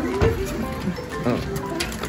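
Background music with a few sliding, bouncy notes.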